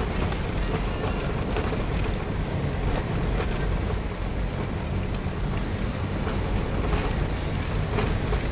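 Steady rumble of a car driving over an unpaved gravel road, heard from inside the cabin: engine, tyre and road noise.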